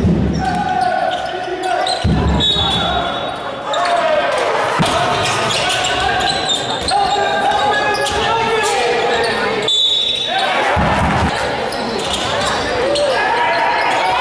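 Live basketball game sound in an echoing sports hall: voices calling out over the play and a ball bouncing on the court floor.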